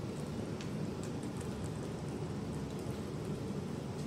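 Steady low background noise, with a few faint short ticks.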